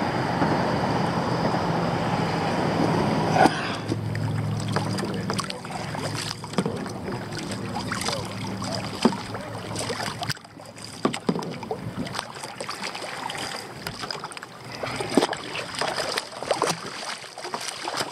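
A steady rushing noise for the first few seconds. Then irregular water splashes and sloshing as a big red drum is held in the water alongside a sit-on-top kayak and released, thrashing at the surface.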